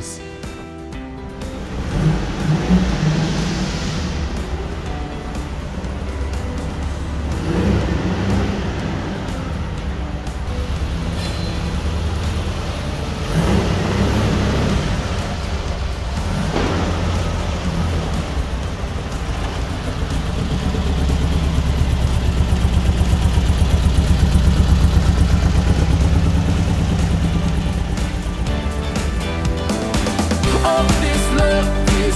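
The air-cooled Volkswagen flat-four of a 1980 Puma GTS convertible running as the car is driven slowly, its revs rising and falling a few times and getting louder in the last third. Music plays underneath.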